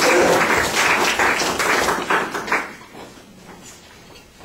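A small classroom audience clapping, a dense patter of many hands that dies away about two and a half seconds in.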